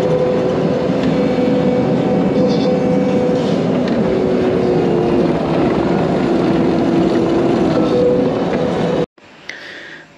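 Caterpillar 953 track loader heard from the operator's seat: a steady, loud diesel engine and running gear, with several whining tones that slide up and down in pitch as it works. It cuts off abruptly about nine seconds in, and a much quieter sound follows.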